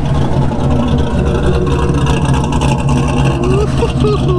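GM LS V8 swapped into a Honda Accord, idling steadily.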